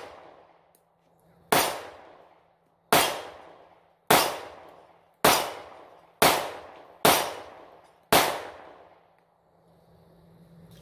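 Seven shots from a Smith & Wesson Shield semi-automatic pistol, fired one at a time about a second apart, each followed by an echo that dies away over roughly a second.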